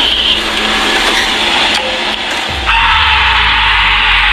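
A loud, harsh, noisy sound of unknown origin coming from the bushes, the kind that frightens the officer into retreating. It grows stronger and brighter about two and a half seconds in.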